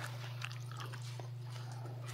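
Steady low electrical hum, with a few faint ticks and rustles of Bible pages being turned.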